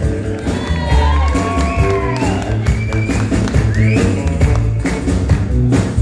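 Live rock band playing an instrumental vamp on bass and drums, with a lead line of sliding, bent notes that arch up and down through the middle of the passage.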